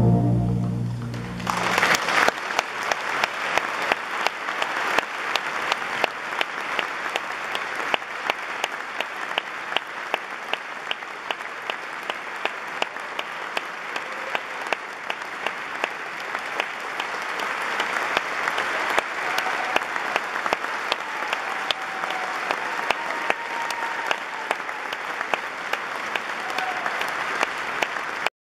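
The band's final held chord dies away in the first second or so, then a hall audience applauds steadily with dense clapping for the rest of the time.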